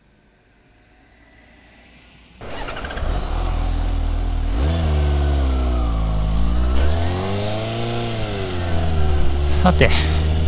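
Quiet at first, then about two and a half seconds in the Suzuki GSX-S750's inline-four engine cuts in loudly, heard from the bike-mounted camera with wind noise, its pitch rising and falling several times as it accelerates and eases off through the gears.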